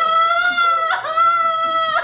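A woman wailing in a high voice: two long held cries of about a second each, with a short break between them, as she sobs theatrically.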